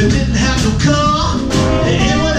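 Live band playing: electric bass, drums and keyboard together, loud and steady, with a pitched lead line that bends over the top.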